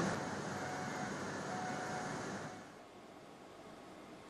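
Steady industrial hum and hiss of a steel mill. It stops about two and a half seconds in, leaving near silence.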